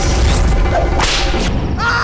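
A belt swung like a whip: two sharp swishing lashes about a second apart, a film fight sound effect. A man's pained cry starts just before the end.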